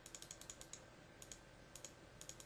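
Faint, rapid clicking of computer keys and buttons, coming in short runs of several clicks.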